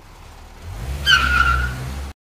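Car sound effect: a low engine rumble grows louder, then a loud, high tyre screech of skidding brakes begins about a second in, falling slightly in pitch, as the car brakes hard.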